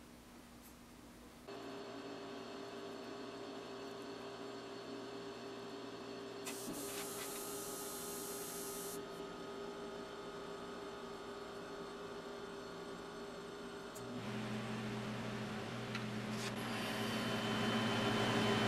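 Steady hum of a room heater running, made of several held tones. It starts abruptly about a second and a half in and gets louder about 14 seconds in, with a brief high hiss near the middle.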